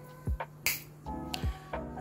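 Background music with a thudding beat, and a single finger snap about two-thirds of a second in.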